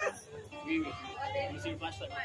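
Indistinct talking in the room between songs, quieter than the stage talk before it, with a few stray notes from the band's instruments.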